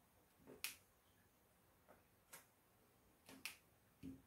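A diamond painting pen picking up and pressing resin drills onto the canvas: a few faint, sharp clicks spaced irregularly, two of them close together near the end, over near silence.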